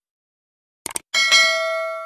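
Two quick mouse-click sound effects, then a notification-bell ding sound effect that rings in several clear tones and fades away over about a second and a half.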